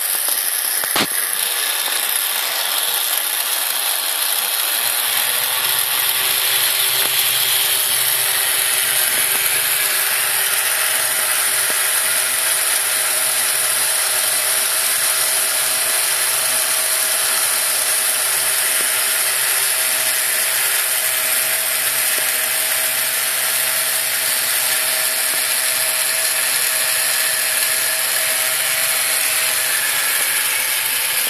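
The electric lift motor and gearing of a 1965 Acosta MTA4 motorised toaster running steadily, whirring as it slowly raises the toast. There is a click about a second in, and a low hum joins about five seconds in.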